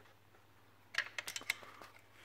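About a second of near silence, then a quick, irregular run of small metallic clicks and taps as a short 8 mm open-end spanner is handled and fitted onto an exhaust flange bolt.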